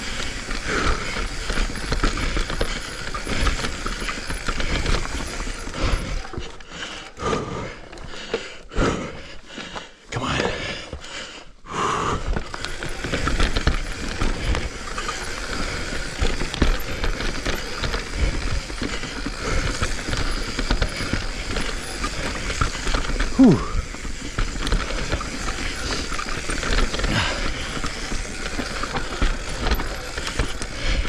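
Full-suspension mountain bike rolling down a rough dirt trail: continuous clattering and rattling from the chain, frame and suspension, with ticking from the rear hub and tyre noise. It drops to a quieter, choppier patch for a few seconds in the first half, then carries on.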